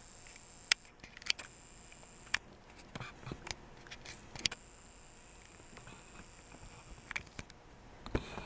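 A handful of sharp, faint clicks and taps from a video camera being handled and zoomed in, over low background hiss.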